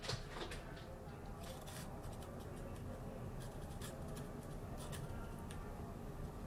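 Sharpie marker scratching on a concrete wall in short, faint strokes as a signature is written, over a steady low hum.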